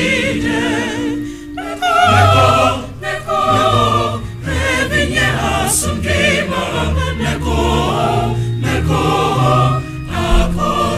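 Choir singing, the voices wavering with vibrato over low sustained bass notes, with brief breaks between phrases about a second and a half and three seconds in.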